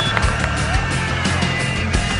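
Background music with a steady beat: a driving track with a heavy bass line, laid over game footage.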